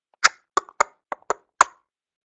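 Six sharp, short clicks at uneven spacing, from computer input while the chart's drawings are being cleared.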